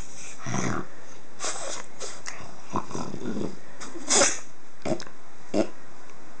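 A pug lying on its back, making irregular breathy grunts and snuffles through its short nose as its belly is rubbed. Short, sharper noises come about three, four, five and five and a half seconds in, the one near four seconds the loudest.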